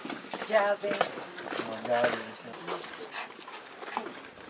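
Short bits of untranscribed talk from a group walking, with scattered footsteps on stone paths and steps.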